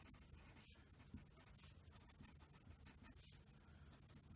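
Wooden pencil writing on lined notebook paper: faint, uneven scratching of the pencil strokes.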